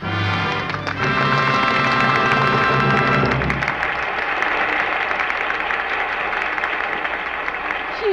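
An orchestral music bridge with brass, ending about three and a half seconds in, then a crowd of audience members applauding.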